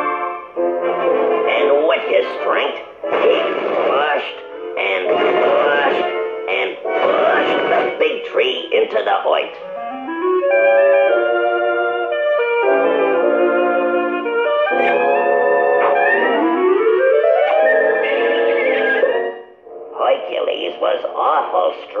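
Orchestral cartoon music score with brass and woodwinds, rising in pitch in two slides around the middle.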